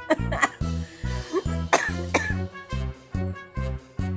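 Sleeping golden retriever making short huffing, laugh-like sleep vocalizations in two brief bursts, one at the start and one about two seconds in.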